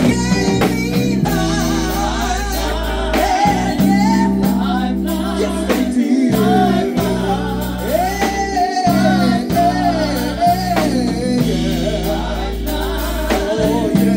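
A live band plays with a singer. The voice glides and holds notes over a drum kit, keyboards and a steady, sustained bass line.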